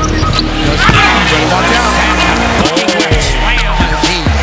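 Background music over game sound of a basketball being dribbled on a hardwood court, with a few short sneaker squeaks about a second in and near the end.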